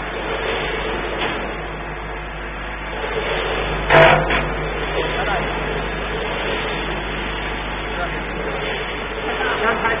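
Machinery running steadily with a continuous hum, and indistinct voices behind it. A single sharp, loud clack comes about four seconds in.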